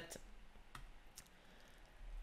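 A few faint computer mouse clicks over near-silent room tone.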